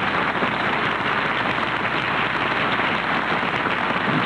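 Studio audience applauding steadily, a dense even clapping with no music under it.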